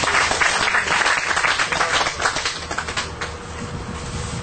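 Audience applauding, many hands clapping at once, the clapping thinning out and getting quieter toward the end.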